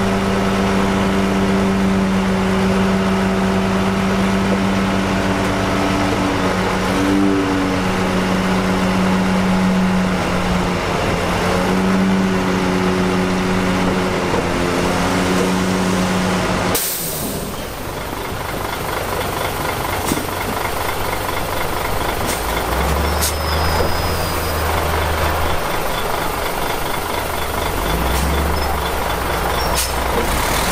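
Heavy diesel engine of a tipping dump truck running at steady raised revs. About two-thirds of the way through, the sound changes abruptly to a different, lower diesel engine with faint ticking.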